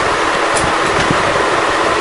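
Steady, even rushing hiss of background noise with no distinct events.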